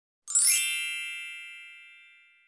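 A single high, metallic chime, an audio logo sting, struck about a quarter second in and ringing out with many overtones, fading slowly over the next two seconds.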